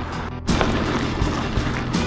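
Steady rushing noise of wind and tyres on a gravel road while mountain biking, with music underneath. The noise dips briefly and comes back louder about half a second in.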